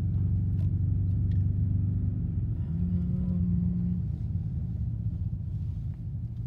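Car engine and road noise heard from inside the cabin while driving slowly: a steady low rumble. The engine note strengthens for about a second near the middle.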